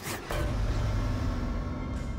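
Dramatic soundtrack effect: a sudden hit or whoosh, then a steady low rumbling drone with hiss that slowly fades.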